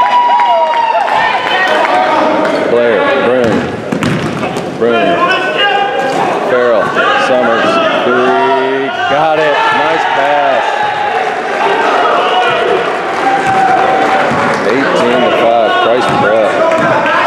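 Basketball game in a gym: voices calling out and chattering throughout, with a basketball bouncing on the court floor now and then.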